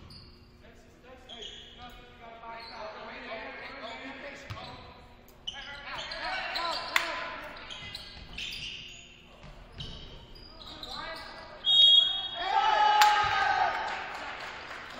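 Basketball game sounds echoing in a gymnasium: the ball bouncing on the hardwood court, sneakers squeaking and players and spectators calling out. Near the end comes a short high whistle blast, followed by a loud shout.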